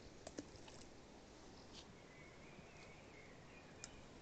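Near silence: faint outdoor quiet with a few soft clicks, and a faint high wavering call through the second half.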